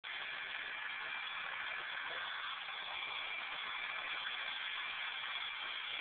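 Electric drill running at a steady speed with a steady whine, driving a paint-mixer paddle through grain mash in a cooler mash tun.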